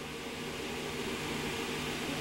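Steady room background noise: a low mechanical hum with faint hiss, unchanging throughout, with no voices.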